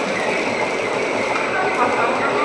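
Water from a hose rushing into and against a stainless steel wine tank as it is rinsed out: a steady, loud spraying noise.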